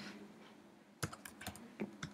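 Computer keyboard typing: after about a second of near silence, a burst of several short key clicks as letters are typed into a browser address bar.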